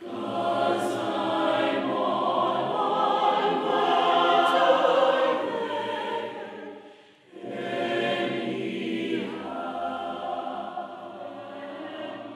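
A choir of men's and women's voices singing together in long held notes. The singing breaks off briefly about seven seconds in, then goes on.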